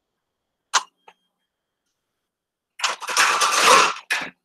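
Computer keyboard and mouse: two single clicks early, then about a second of rapid, dense clattering near the end, with dead silence between the sounds.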